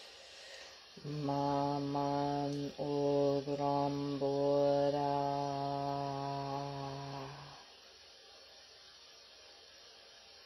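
A single voice chanting on one low, held pitch: a short held note of about a second and a half, then a long drawn-out note of about five seconds that fades away.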